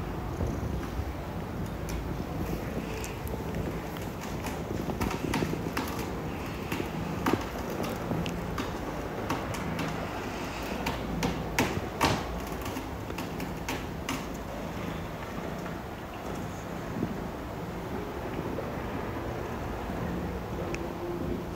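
Maine Coon kitten purring steadily close to the microphone while his father licks and grooms him. Scattered sharp clicks and rustles from the grooming come through, most of them in the middle.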